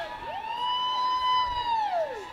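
Spectators whooping and hollering during a fast reining run, one long held "whoo" that rises early, holds steady, and falls off near the end over fainter yells from others.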